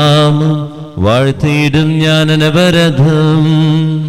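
A man's voice chanting a Malayalam Syro-Malabar Qurbana prayer on long held notes with small melodic turns. The chant breaks briefly for a breath about a second in and again near the end.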